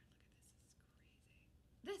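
Near silence: low room tone with a few faint short hisses, then a woman's voice begins near the end.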